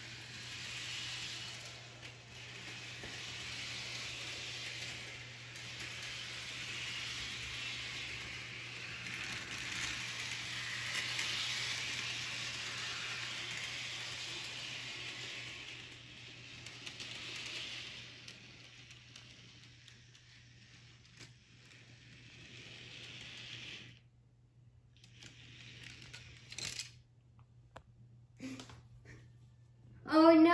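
HO-scale model train (a Thomas & Friends James engine pushing flatcars) running along the track: the steady whirring hiss of its small electric motor and wheels on the rails, swelling about halfway through and fading over the last few seconds.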